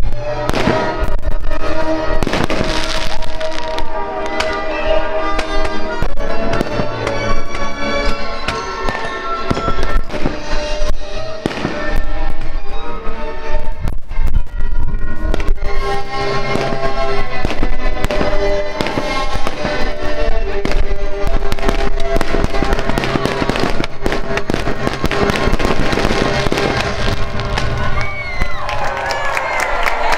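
Fireworks bursting many times in quick succession, fairly small bursts rather than big booms, over the show's music playing throughout.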